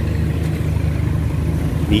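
Motor scooter engine idling with a steady low hum, amid street traffic.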